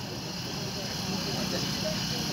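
Steady background hum with an engine-like drone, running evenly with no distinct events.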